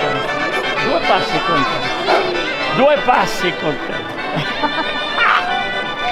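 Traditional Quattro Province folk dance music playing steadily for street dancing, with people's voices talking and calling out over it.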